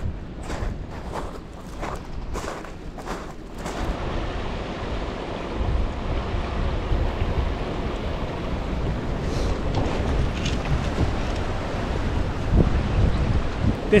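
Steps crunching on a shingle beach for the first few seconds, about two a second. Then a steady rush of wind on the microphone with water washing in the background.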